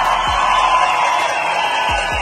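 A large crowd cheering and shouting together in a steady roar.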